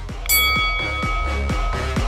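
A single bell-like chime rings out about a quarter second in and fades over about a second and a half, signalling the start of a timed exercise interval. It plays over electronic dance music with a steady beat.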